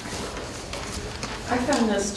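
The last few scattered hand claps of an audience's applause dying away. About a second and a half in, a woman starts speaking.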